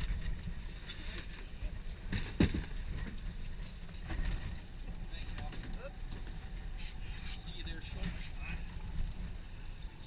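Steady low rumble of wind and idling boat motors on open water, with faint voices and one sharp knock a little over two seconds in.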